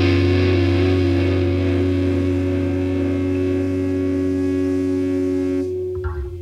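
A rock song's final distorted electric guitar chord, held and ringing out with no new strokes. Its upper notes drop away near the end as the chord starts to die.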